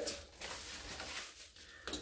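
Faint rustling of paper and packaging being handled as a fan-mail envelope is opened, with a small click near the end.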